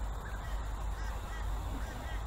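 Short bird calls repeating every half second or so over a low, steady rumble.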